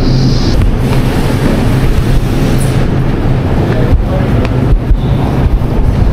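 Shopping cart rolling along a hard store floor: a steady rumbling rattle with scattered small knocks.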